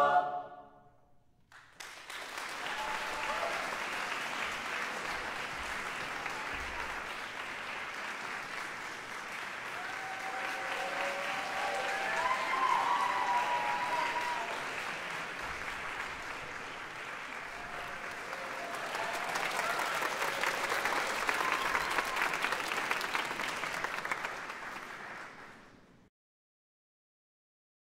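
A choir's final chord ends, and after a brief pause the audience applauds steadily for over twenty seconds, with a few voices calling out in the crowd. The applause cuts off abruptly near the end.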